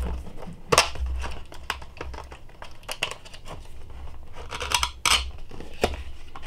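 Glued flap of a cardboard retail box being picked and pried open by hand, the glue seal and cardboard tearing and scraping in short sharp snaps. The loudest snaps come about a second in and again near five seconds.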